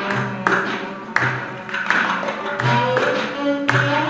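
Live instrumental music from a darbuka, cello, piano and drum-kit ensemble: sharp hand-drum strikes, several with a short low thump, about every half second to a second, over sustained cello and piano tones.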